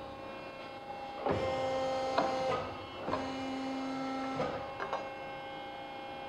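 Edwards 120-ton hydraulic ironworker with press brake tooling humming steadily, then its ram working through a bending stroke on a quarter-inch sample: a mechanical run of about a second and a half with a click in the middle, a short pause, then a second run of about a second and a half at a lower steady pitch, followed by a couple of light clicks.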